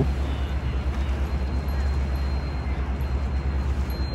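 Riverboat engine running with a steady low drone under an even wash of wind and water noise, as the boat moves along the river.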